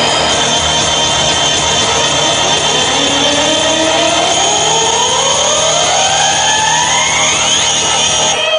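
Loud live electronic music heard through a concert PA: a dense, noisy wall of sound with steady high tones. From about three seconds in, a synthesizer tone glides steadily upward to a high pitch.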